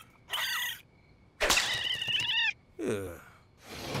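Cartoon raccoon vocal effects from a mating pair: a short high-pitched call, then a louder, longer call with wavering pitch about a second and a half in. A man's falling sigh follows near the end.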